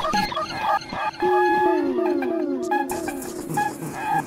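Techno synthesizer passage with no kick drum: steady held tones, repeated short falling pitch glides, and sharp clicks.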